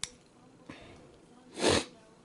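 A person sniffs once, a short sharp breath through the nose, about one and a half seconds in, after a small click at the start.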